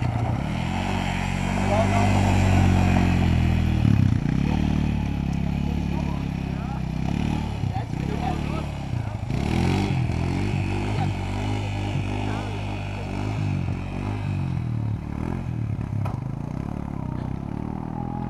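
Quad bike engine revving up and down as the rider throws it about and pops a wheelie; the pitch climbs and falls in long sweeps.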